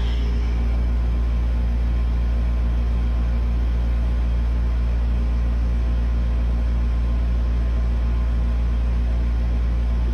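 A steady low hum with a deep rumble beneath it, unchanging throughout, with no distinct knocks or voices over it.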